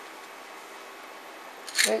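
Quiet, steady room tone with no distinct sound, then a man's voice starting just before the end.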